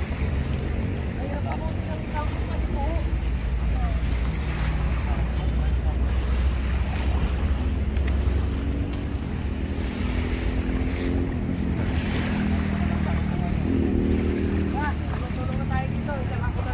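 Steady low wind rumble buffeting the microphone outdoors by open water, with faint background voices and no single sound standing out.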